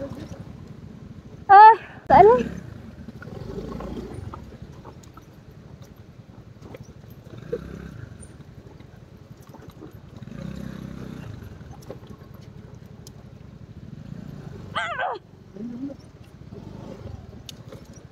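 Motor scooter engine running low under a rough, rumbling ride over loose rocks, with scattered small knocks from stones under the tyres. Short loud vocal exclamations cut in about a second and a half and two seconds in, and twice more around fifteen seconds.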